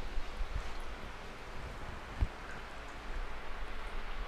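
Water running and dripping off a freshly scalded raw turkey into the pan below as it is lifted, a steady watery hiss, with one dull thump about two seconds in.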